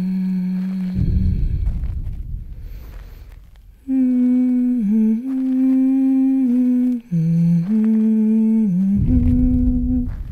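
A voice humming a slow wordless melody in long held notes with small slides between them, stopping for a few seconds in the middle. A deep low boom sounds about a second in and again near the end, each fading away slowly.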